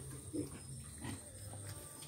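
Weaner pigs grunting faintly while feeding at a trough, with one short grunt just after the start.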